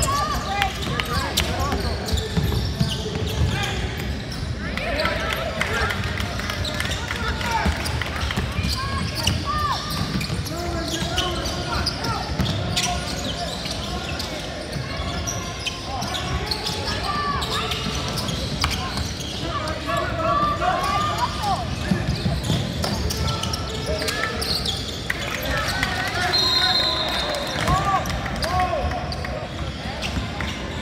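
Basketball bouncing on a hardwood court during a game, with players' and spectators' voices calling and chattering in a large gym hall.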